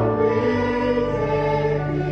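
A hymn sung by a group of voices, with sustained accompanying chords, moving from one held note to the next.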